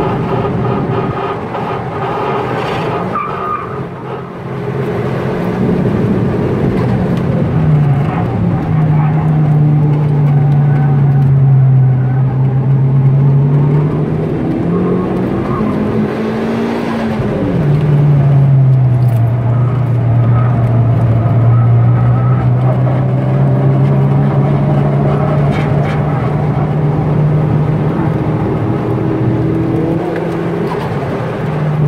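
Turbocharged 2002 Hyundai Tiburon's 2.0-litre four-cylinder engine pulling hard, heard from inside the cabin. The engine note dips briefly about four seconds in, climbs to a peak a little past halfway, then drops sharply and holds steady.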